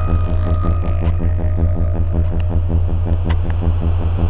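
Modular synthesizer: samples run through a Synton Fenix 2 phaser that is being modulated and set to feedback. It gives a loud, low electronic drone that pulses about four times a second, with a thin, steady high tone above it.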